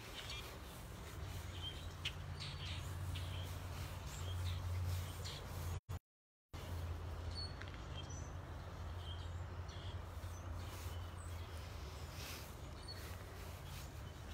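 Scattered bird chirps over a steady low rumble, with the sound cutting out completely for about half a second around six seconds in.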